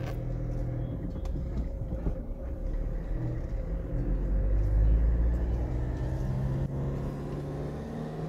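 Moving car heard from inside the cabin: a steady low engine and tyre rumble, a little louder about five seconds in.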